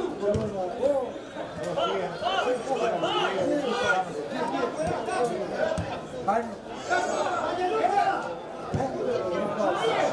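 Chatter of several people talking at once near the microphone, voices overlapping with no single clear speaker, from spectators at a football match.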